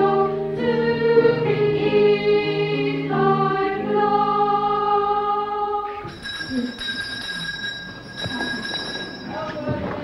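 A group of boy trebles singing unaccompanied in held, step-by-step notes, stopping abruptly about six seconds in. After that, a quieter room with faint boys' voices and a faint steady high tone.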